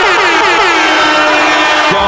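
Electronic sound effect: a rapid string of short falling pitch sweeps, about six or seven a second, that slows into one longer downward glide, holds a steady tone and cuts off just before the end.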